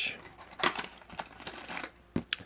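Small cardboard box being handled and opened, with light rustling and scraping, a sharper tap a little way in and a few faint ticks.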